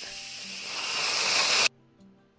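Steam hissing hard out of an Instant Pot's steam release valve during a quick pressure release after cooking. The hiss grows louder, then cuts off suddenly near the end.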